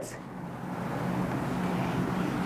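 Whiteboard eraser rubbing across a whiteboard: a steady scrubbing hiss that builds up over the first second.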